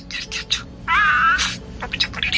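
Pet budgerigar chattering in fast, scratchy budgie talk, its mimicked speech run together. About a second in comes a loud warbling whistle.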